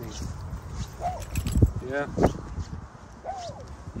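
A dog barking and yelping in short, separate calls: a yelp about a second in, two sharp barks in the middle, and another yelp near the end.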